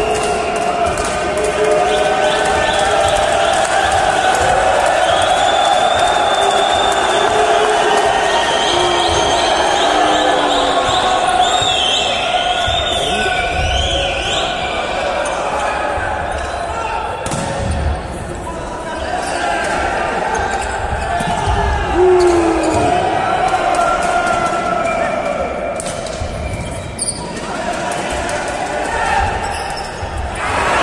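Volleyball being played in a sports hall: thuds of the ball being hit and landing, over continuous shouting and chatter from players and spectators.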